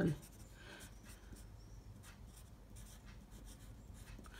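Pencil writing on a sheet of paper: a faint run of short scratching strokes as words are written out by hand.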